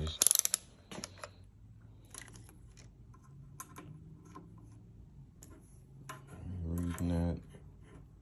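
Handling clicks and rattles of a digital clamp meter and its test leads against a hybrid battery pack's metal rack, as a voltage reading is taken: a quick rattle of loud clicks just after the start, then scattered light clicks. A brief low voice sounds near the end.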